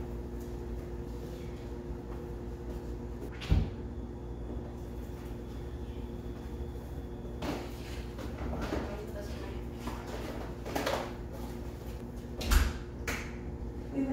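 Household items being carried in and set down: two heavy thumps, one about three and a half seconds in and a louder one near the end, with knocking and rustling between them as a plastic storage bin and boxes are handled. A steady hum runs underneath.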